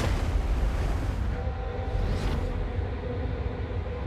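Underwater explosion of a spar torpedo, as sound design: a deep boom at the start that sinks into a long, heavy low rumble, with a rushing swell about two seconds in.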